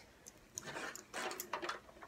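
Faint handling noise of a plastic canister vacuum cleaner being lifted: soft knocks and rustles starting about half a second in.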